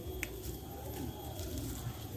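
A single short click of hand pruning shears snipping a small twig, about a quarter second in, over faint background.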